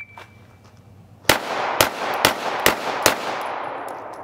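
Five handgun shots fired in quick succession, about half a second apart, starting about a second and a half in. Each shot is followed by echo that fades slowly after the last one.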